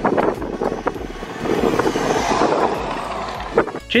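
A 2013 Porsche Panamera 3.0 V6 diesel driving past on a road: its engine and tyre noise swells to a peak about two seconds in, then eases off.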